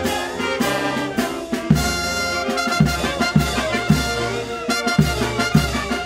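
Brass band playing a march: trumpets and trombones over a steady bass beat.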